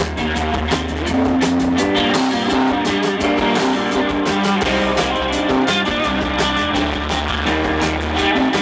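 Live rock band playing an instrumental passage with no vocals: electric guitars over bass guitar and drum kit.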